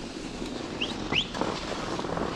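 Skis sliding over groomed snow, a steady hiss, with two short rising high chirps a little before and just after one second in.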